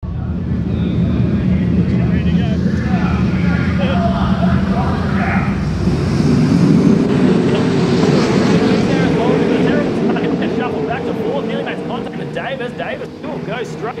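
A pack of sprint cars' V8 engines running together at a race start, swelling to their loudest about six to nine seconds in as the field accelerates away under the green flag, then easing off.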